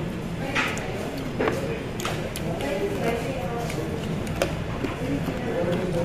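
Indistinct voices in the background of a restaurant dining room, with a few sharp clicks scattered through.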